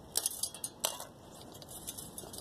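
Length of thin copper pipe being bent by hand, giving a few sharp metallic clicks and clinks, the loudest a little under a second in.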